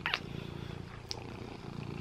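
Domestic cat purring steadily while held close against the microphone, with a couple of faint clicks, one near the start and one about a second in.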